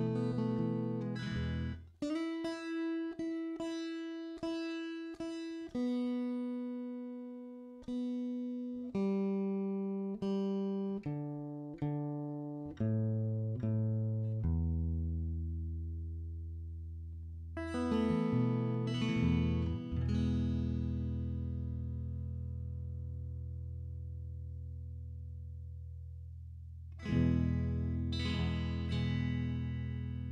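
Acoustic guitar being tuned string by string: the highest string plucked several times, then single notes on each lower string in turn, stepping down to the lowest string. A few chords follow and are left to ring, with one more chord near the end.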